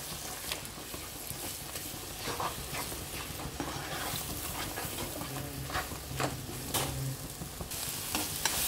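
Scrambled egg with onion-tomato masala sizzling in a nonstick frying pan while a spatula stirs and scrapes it, with scattered short scraping taps against the pan.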